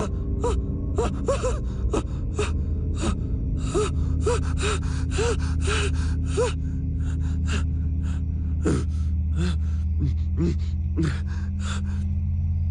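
A person gasping and panting in short, ragged breaths, many with a brief voiced catch, over a low steady drone.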